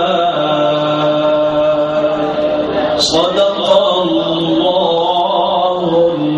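Background music: a singer holding long, drawn-out notes in a chant-like melody, changing note about every second or two.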